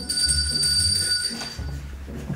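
A bell rings once and its high ringing tone fades out after about a second and a half, over a low rumbling handling noise.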